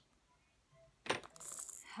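A baby's toys knocked together: one sharp plastic clack about a second in, followed by a brief, high rattle.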